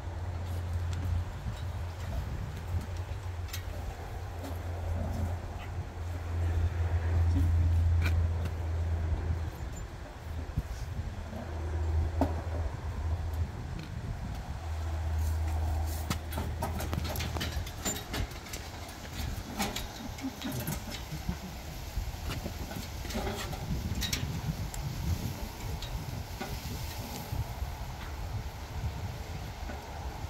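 Scattered light clicks and knocks of objects being handled inside a columbarium niche, mostly in the second half. A low rumble comes and goes in the first half and is loudest about a third of the way in.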